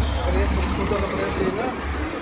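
Low, steady rumble of a motor vehicle passing on the street, with voices over it.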